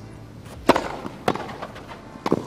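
Tennis racket strikes on a ball during a grass-court point: two sharp hits about half a second apart, a serve and the return, over a steady low hush of court ambience.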